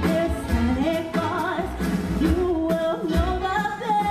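A woman singing a melody with wavering vibrato on her held notes, backed by a live stage band with trumpet and upright bass.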